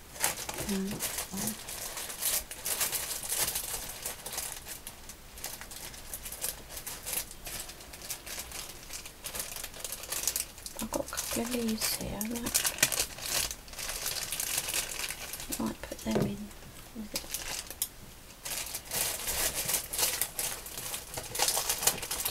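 Plastic crinkling and rustling as a clear plastic craft tub and small plastic bags are rummaged through by hand, in many short crackles throughout. A low murmuring voice sounds briefly three times.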